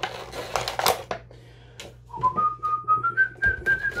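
Clear plastic blister packaging crinkling and clicking as it is handled. About halfway through, a man starts whistling a tune whose notes climb step by step, while the plastic goes on clicking.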